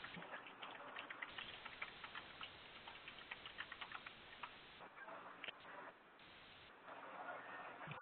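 Faint, irregular clicking picked up over an open conference-call line, several clicks a second through the first half, then thinning out into line hiss.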